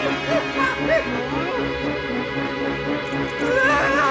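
Cartoon background music with a steady repeating beat, over a cartoon character's short whimpering cries that come in brief wavering glides, most in the first second or so and again near the end.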